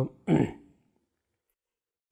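A man clearing his throat once, briefly, about a quarter of a second in.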